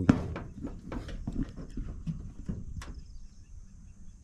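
Footsteps and knocks on metal tile-profile roofing sheets: a run of irregular clicks and taps, the loudest right at the start, over a low rumble.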